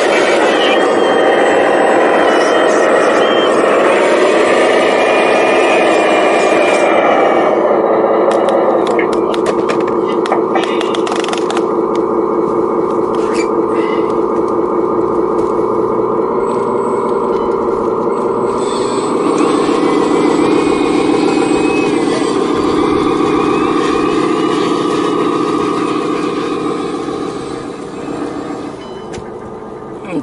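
Radio-controlled scale wheel loader and articulated dump truck running, giving a steady motor and gear whine whose pitch shifts as the machines move. A run of sharp clicks comes from about 8 to 12 seconds in. The sound fades near the end as the truck drives away.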